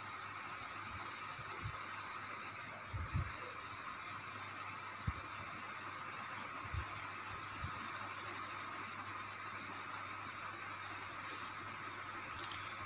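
Faint steady sizzle of the spiced potato-and-pea samosa filling frying in a steel kadai on a gas stove, with a few soft knocks of the steel spoon against the pan as the filling is stirred.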